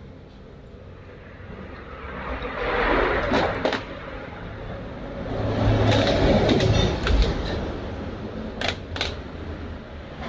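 A motor vehicle passing, its sound swelling twice and fading, the second time louder with a low hum. A few sharp metallic clicks of bolts and tools being handled.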